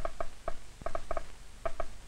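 Loudspeaker of a transistor alpha-particle detector and amplifier snapping once for each alpha particle that strikes the detector. The clicks are irregular, about five a second, and often come in quick pairs.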